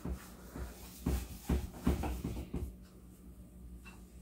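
Faint, soft scuffs and light taps of a hand working a coin on a sheet of paper on a tabletop. There are about six short sounds spread over the first three seconds, then it goes nearly quiet.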